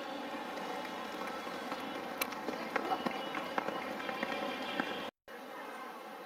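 Steady open-air stadium background of distant voices with scattered light taps. The sound cuts out for a moment about five seconds in and comes back slightly quieter.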